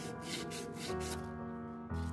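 Emery paper rubbed back and forth on a refrigerator's copper tube in repeated strokes, cleaning the pipe before brazing, over background music.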